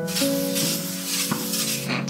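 A spray hissing continuously for about two seconds, starting abruptly, over background music.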